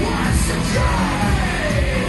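Industrial metal band playing live at full volume: a heavy, evenly pulsing kick drum under guitar and synths, with a yelled vocal. A long downward pitch slide runs through the second half.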